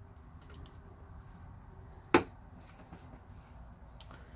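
A single sharp click about two seconds in as a closed folding knife is handled and lifted off a bamboo mat, with a few faint ticks and a low room hum around it.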